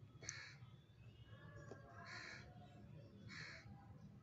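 Crow cawing faintly in the background, three short harsh caws spread over a few seconds, over quiet room tone.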